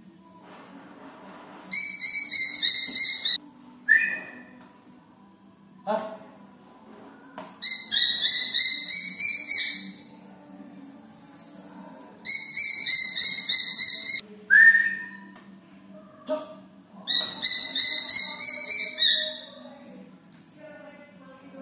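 A small raptor calling in four long bursts of rapid, shrill repeated notes, with a couple of short single chirps and a sharp knock or two in between.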